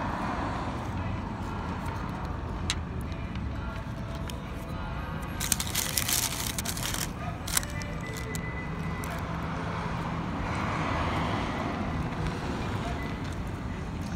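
Steady low rumble of outdoor traffic and ambient noise. About six seconds in come a few sharp clicks and a brief crinkling of paper as a chicken tender is lifted from its paper-lined basket.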